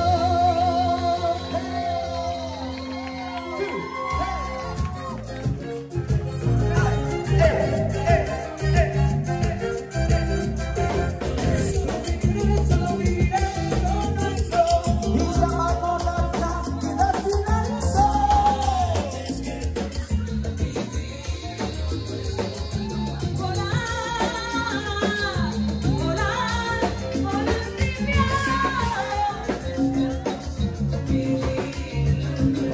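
Live band playing Latin dance music in a salsa style, with vocals over it. Held notes open it, and a steady, driving beat comes in about four seconds in.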